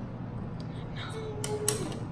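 Two sharp snips of small scissors cutting a tangled lock of hair, about a second and a half in, the second one louder, with a brief held vocal sound around them.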